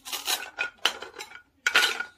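Plastic toy knife and play-food pieces knocking and clattering on a plastic cutting board: a string of short clicks and taps, the loudest near the end.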